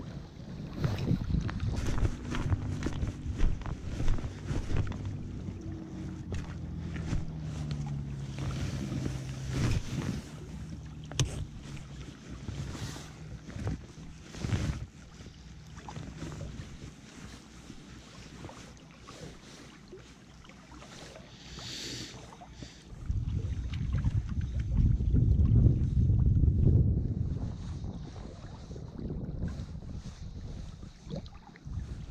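Wind buffeting the microphone by open water, with a strong gust about two-thirds of the way through. In the first half a low hum holds and then steps down in pitch, and there are a couple of sharp knocks of handling.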